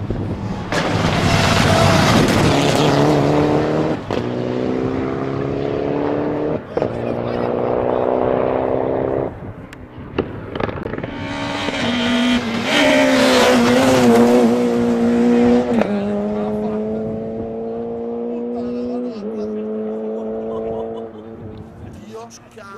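Two rally cars in turn accelerating hard on a stage, each engine note climbing steadily and then dropping back at each upshift, with a brief lull between the two.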